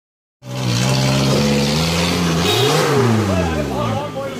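Engine of a modified Suzuki Gypsy revving under load as it climbs over rocks with its tyres spinning, starting about half a second in; its pitch rises and falls again about two-thirds of the way through.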